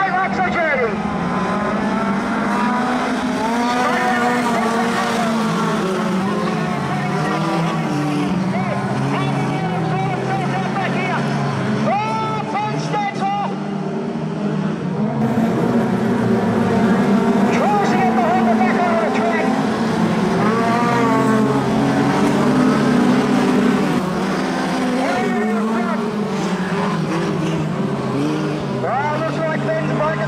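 A pack of four-cylinder speedway sedans racing on a dirt track, several engines running hard at once and rising and falling in pitch as the cars go through the corners.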